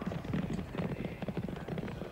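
Hooves of a field of five steeplechase horses galloping on turf: a fast, irregular drumming of overlapping hoofbeats.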